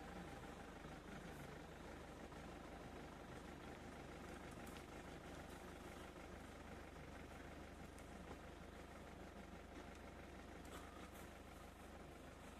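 Near silence: a faint, steady low hum under a light hiss.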